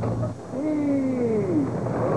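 One long, slowly falling call from a voice, sung out as crew haul on a line aboard a sailing schooner.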